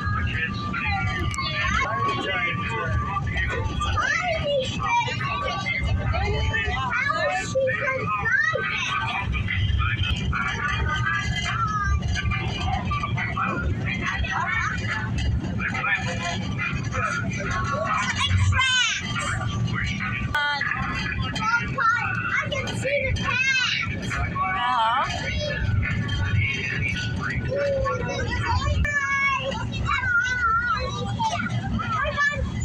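Children's voices chattering, calling and squealing among the riders, over the steady low rumble of a riding train car moving along its track.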